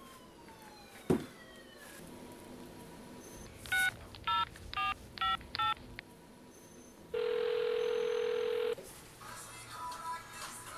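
A phone being dialled: five touch-tone keypad beeps in quick succession about four seconds in, then one ringback tone lasting about a second and a half as the call rings through. A sharp click comes about a second in.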